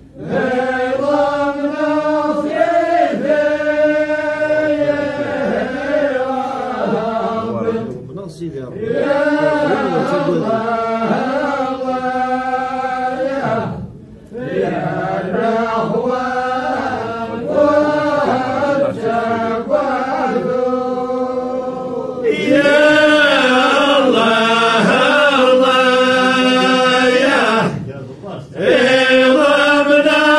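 A group of voices chanting together in unison, in repeated phrases broken by brief pauses. About two-thirds of the way through the chant grows louder and fuller.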